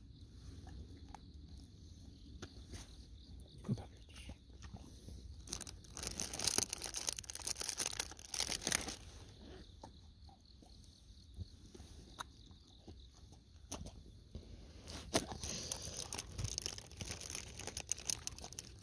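Dogs crunching and chewing crisp treats, with crinkling of a snack wrapper in bursts about six seconds in and again near the end, over steady autumn insect song.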